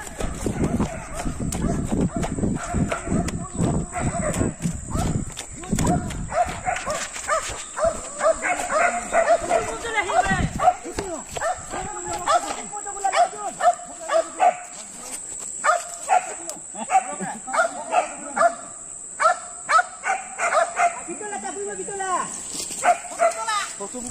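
Walking and handling noise on a dirt path for the first few seconds, then a dog barking in a long run of short, repeated barks.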